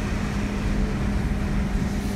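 Steady road and engine noise heard inside a car's cabin while it drives at highway speed, with a constant low hum running under the tyre noise.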